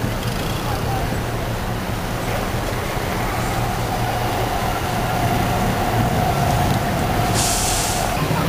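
Busy city street traffic: the steady low rumble of idling and slow-moving cars, taxis and buses. A steady whine joins about three seconds in, and a short sharp hiss comes near the end.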